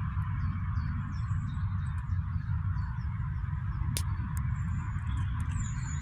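Small birds chirping in short, high, repeated notes over a steady low rumble, with one sharp click about four seconds in.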